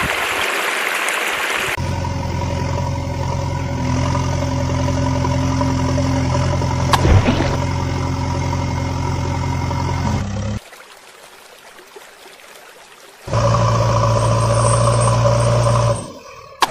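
Running water for about the first two seconds, then a steady engine idling sound effect. It cuts out about ten and a half seconds in and returns about thirteen seconds in, with a single sharp click near the middle.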